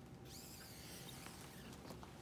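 Faint rustling from catheter equipment being handled on a draped sterile table, with a single light click near the end.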